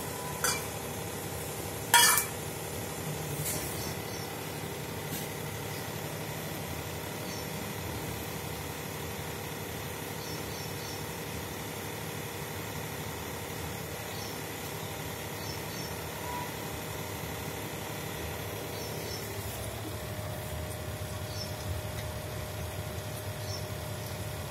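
Steady background hiss with a faint, even hum, broken by one sharp clink about two seconds in.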